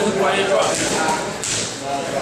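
Boxing gloves hitting focus mitts during a pad drill: a few sharp smacks, under voices in the gym.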